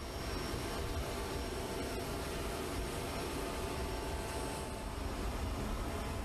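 Steady jet aircraft engine noise: a constant rush with a faint thin whine that fades out about five seconds in.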